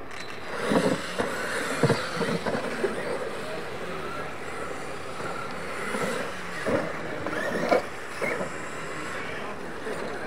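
Losi LMT electric RC monster trucks racing on a dirt track, running steadily with tyres on loose dirt. Several sharp thumps stand out, about a second in, near two seconds and twice between six and eight seconds, as the trucks hit and land the jumps.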